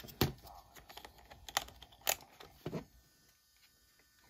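A few sharp plastic clicks and knocks from a JVC Mini-DV camcorder being handled as its lens cap is fitted over the lens.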